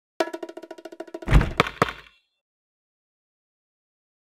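Cartoon game sound effect: a fast, rattling run of taps like a drum roll, then a low thump and two sharp knocks, all over about two seconds in.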